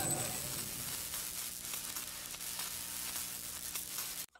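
Segment-title sound effect: a crackling, sizzling hiss over a faint steady low hum, a little louder in the first half-second.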